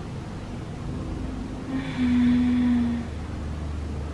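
A woman's low, steady moan through a labour contraction, held for about a second midway, over a low background hum.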